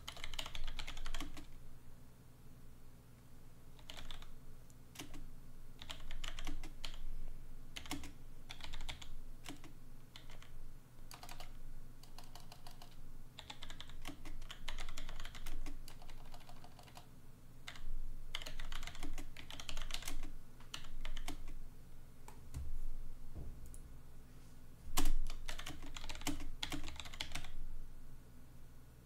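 Typing on a computer keyboard in bursts of rapid key clicks with short pauses between them, with one louder knock near the end.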